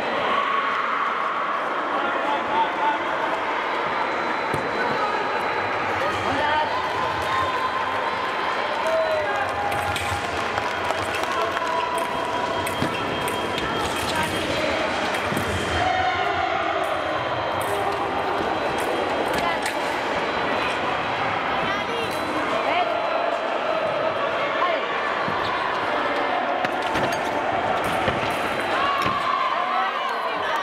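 Busy fencing-hall ambience: a steady wash of overlapping voices and calls from teams and spectators, broken by repeated sharp knocks of fencers' feet stamping on the piste.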